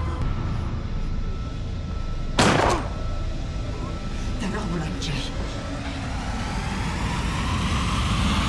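A man speaking over a steady low rumble, with one sudden loud noise about two and a half seconds in.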